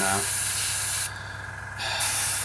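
Airbrush spraying paint in two bursts: a hiss of about a second, a short break, then the hiss starts again near the end.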